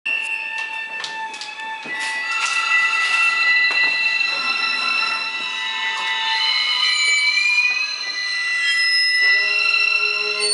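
Free-improvised electro-acoustic ensemble music: several held, high, squealing tones layered over scattered clicks and taps from small percussion, with lower sustained tones joining near the end.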